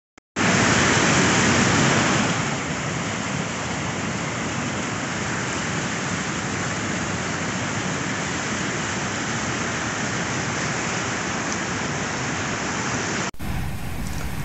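A large waterfall in high spring snowmelt flood, its white water giving a steady, loud rush. It is a little louder for the first two seconds, then holds even, and cuts off abruptly near the end.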